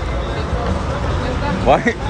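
Low, steady rumble of street traffic, with a man's voice starting near the end.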